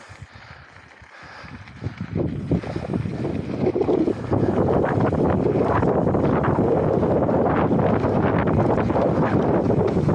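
Wind rushing over an action camera's microphone, mixed with mountain bike tyres rolling on a dusty dirt trail during a fast descent. It builds about two seconds in and is loud and steady from about four seconds on.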